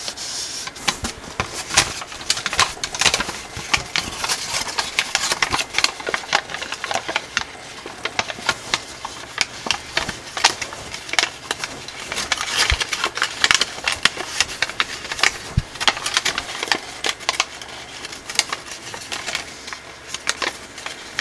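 Gold foil origami paper crinkling and crackling as fingers crease and shape the folds of a paper star: a steady run of dense, crisp crackles and small snaps.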